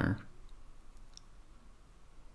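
A spoken word trails off at the very start, then a few faint, short clicks sound in a quiet room.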